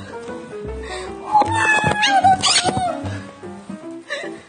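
Background music, with an agitated monk parakeet giving a few sharp, screechy calls with quick rising pitch about one and a half to three seconds in, as it attacks.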